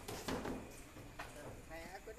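A few scattered hoof steps of a large Simmental bull walking on a paved street, with a brief murmur of a voice near the end.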